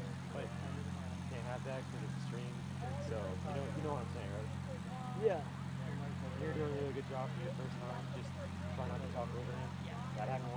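Indistinct chatter of many voices from spectators and players, no one voice clear, over a steady low hum.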